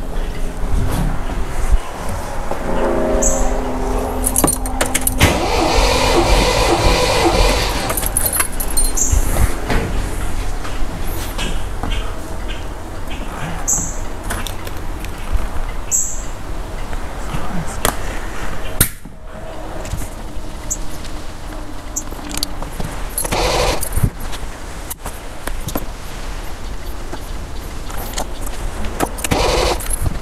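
An MGB's four-cylinder engine turning over on the starter motor with its spark plugs out, for a compression test of one cylinder, with background music.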